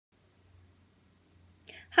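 Near silence with a faint low hum, then a short, soft intake of breath near the end, just before speech begins.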